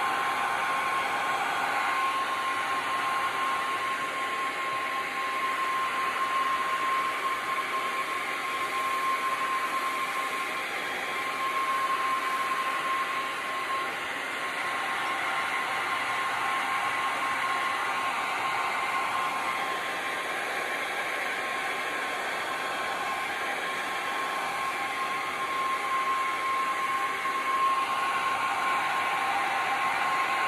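Handheld heat gun blowing steadily over wet epoxy resin, used to spread the white resin into lacy wave cells. A thin whine rides on the rush of air, fading for a while in the middle.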